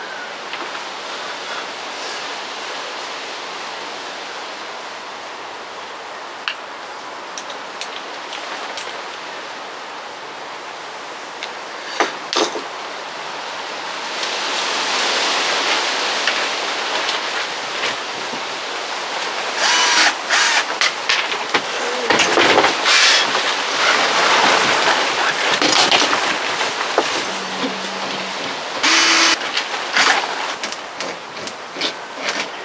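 Cordless drill run in several short bursts through the second half, fixing mounting clips into the boat's fiberglass, over a steady outdoor hiss with a few handling knocks earlier on.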